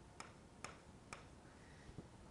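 Faint, sharp taps of a stylus pen on an interactive whiteboard as check marks are drawn in quick succession, about two taps a second.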